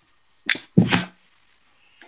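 A person sneezing once: a short breathy sound, then a louder burst about a second in.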